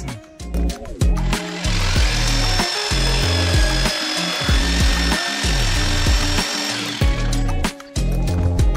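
Jigsaw cutting a wooden paneling board, running steadily with a high whine from about a second and a half in until it stops near the end, over background music.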